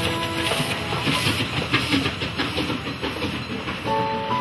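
Narrow-gauge steam train passenger car running along the track, its wooden body rattling with a steady clatter of wheels on rail joints. Background music fades out about half a second in.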